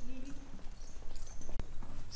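Footsteps and scattered knocks on concrete in a horse stable yard, with one sharp knock near the end.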